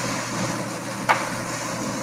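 Steady rushing background noise with a low hum, picked up on a call microphone, with a single faint click about a second in.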